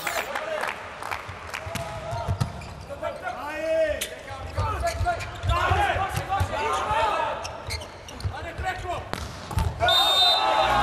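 Indoor volleyball rally: repeated sharp smacks of the ball off players' hands and forearms, with shoe squeaks on the court floor and shouts from players and the crowd in a large arena.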